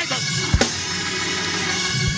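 Church organ holding steady chords under a drum kit, with a single bass-drum hit about half a second in.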